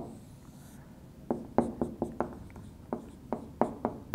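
Dry-erase marker on a whiteboard: after about a second of quiet, a quick run of about ten short strokes and taps as a curve is drawn and a word is written.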